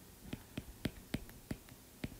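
Stylus tapping on a tablet screen while handwriting a fraction: a run of about six light, sharp ticks in under two seconds.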